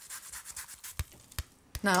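Lemon zest being grated: quick, fine rasping scrapes, then two sharp taps about a second in.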